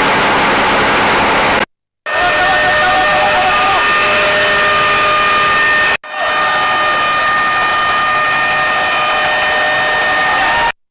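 Loud, steady noise of houses burning, with several high whistling tones held over it, cut twice by brief silences.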